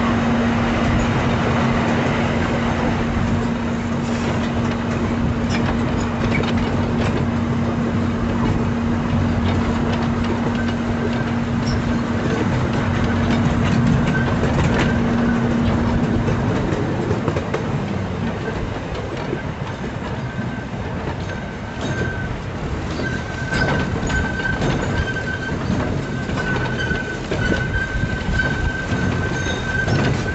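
Miniature park train running along its narrow-gauge track: a continuous rumble of wheels on rails with light clicks. A steady low hum stops about halfway through, and a thin, high wheel squeal comes and goes through the second half as the train rounds the curves.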